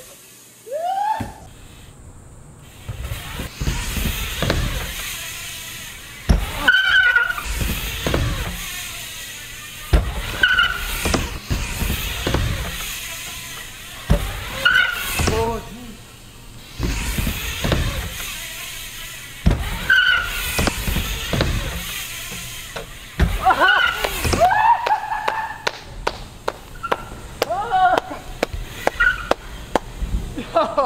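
BMX bike tyres rolling and pumping through the transitions of a wooden ramp, with a surge of rolling noise every few seconds. Short high tyre squeaks come as the bike turns on the ramp surface.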